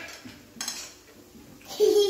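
Chopsticks and a spoon clinking against plates and a metal hot pot, with a short clatter about half a second in. A voice starts near the end.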